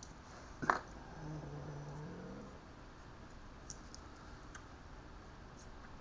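A sharp click, then a few faint small metallic clicks and jingles from a keyring with a permanent match and keys being handled.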